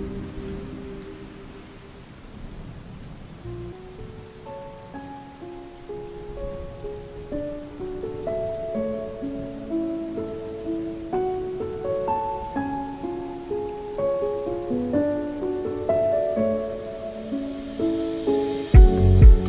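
Steady rain hiss under a lofi music track. A melody of short, clean notes starts sparse and quiet and grows busier, with no drums.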